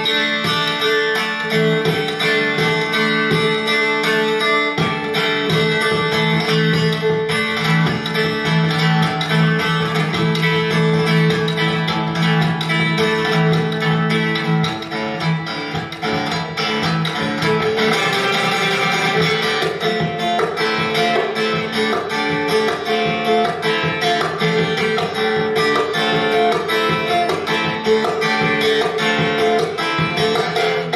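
Solo steel-string acoustic guitar playing a dense run of plucked notes and strums. It comes in sharply right at the start after a brief silence and dips briefly about halfway through.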